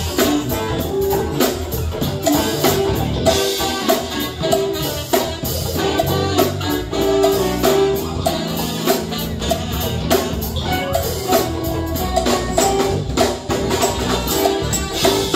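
Live Afro-fusion jazz band playing: a drum kit and tambourine keep a steady, busy beat under a saxophone melody line.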